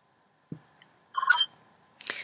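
A faint click, then about a second later a short electronic beep of several high steady tones, lasting about a third of a second: a computer sound effect from the Froguts Flash dissection activity as it opens.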